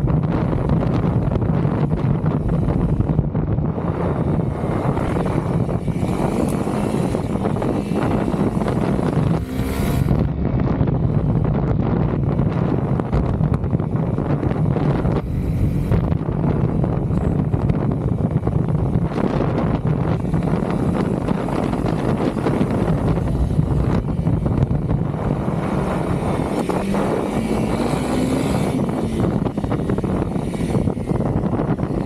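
Honda CRF300L's single-cylinder four-stroke engine running steadily under way, with wind buffeting the microphone. The engine note climbs near the end.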